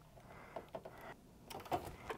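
Near silence with a few faint light clicks and taps, about halfway through and again near the end.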